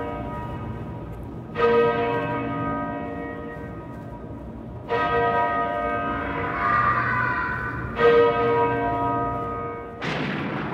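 A large bell tolling slowly as the intro of a song, struck three times about three seconds apart, each stroke ringing on and fading. A wavering higher sound swells briefly between the second and third strokes.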